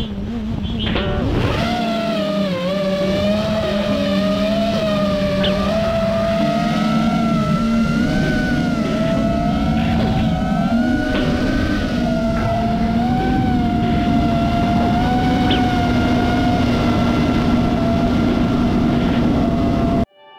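Wizard 220S FPV racing quadcopter's brushless motors and propellers whining steadily in flight, the pitch wavering up and down with the throttle.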